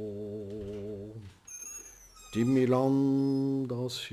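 A man chanting Sanskrit prayers in long, held notes. One drawn-out note fades about a second in, and after a short pause for breath a louder held note starts halfway through.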